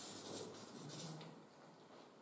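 Felt-tip marker scratching and squeaking across flip-chart paper in a run of short strokes that stop about a second in.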